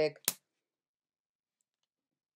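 The end of a woman's spoken word and a single short sharp click right after it, then dead silence.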